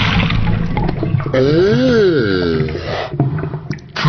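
Cartoon sound effect of liquid gushing and gurgling as water pours from a toy dinosaur's mouth into a basin. In the middle comes one drawn-out pitched sound that rises and falls, followed by more gurgling near the end.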